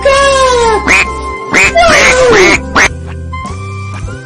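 Duck quacks, a run of about five loud ones in quick succession, some drawn out and falling in pitch, others short, over background music.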